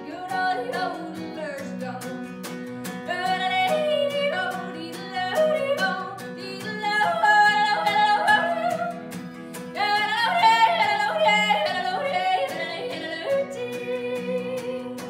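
A woman yodeling, her voice leaping and stepping quickly between held notes, over a steadily strummed acoustic guitar.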